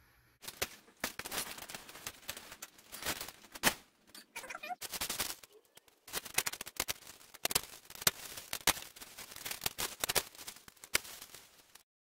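Kraft-faced fiberglass insulation batts and their plastic wrapping being handled, crinkling and rustling in a dense, irregular run of crackles. It cuts off suddenly near the end.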